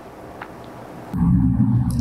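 Faint room tone, then just over a second in a low, steady tone starts suddenly: an edited-in transition sound accompanying a logo bumper.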